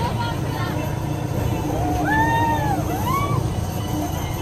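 Riders on a swinging pirate-ship ride whooping together about halfway through, several voices rising and falling in long arched calls over a steady low rumble.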